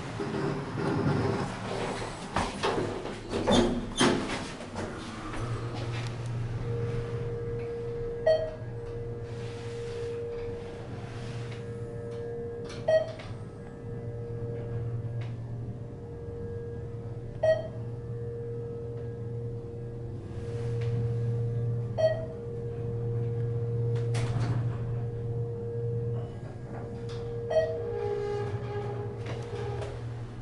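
ThyssenKrupp hydraulic elevator car travelling up: clicks and knocks at first, then the steady hum of the running pump motor with a steady higher tone above it. A short chime sounds about every four and a half seconds as the car passes floors.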